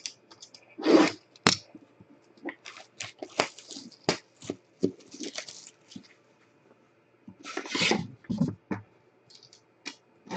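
Plastic shrink wrap being slit with a box cutter and torn off a trading-card box, crinkling and ripping in irregular bursts, loudest about a second in and again about three-quarters of the way through.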